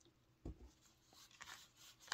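Near silence: a soft low thump about half a second in, then faint rustling, like a person handling things at a table.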